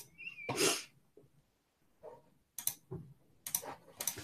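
A short, sharp burst of breath from a person about half a second in, followed by a few faint clicks.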